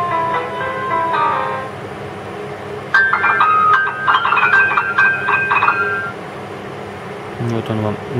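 Virtual piano app played on the touchscreen of an Alcatel OT-918D phone, its notes coming from the phone's own speaker: a run of single notes for the first couple of seconds, then, after a short pause, quick chords of several notes at once from about three to six seconds in.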